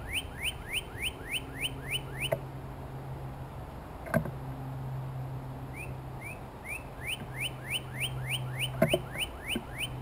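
A northern cardinal singing runs of rising whistled notes, about three a second, in two phrases with a few seconds' pause between them. A steady low hum runs underneath, and a few sharp knocks sound midway and near the end.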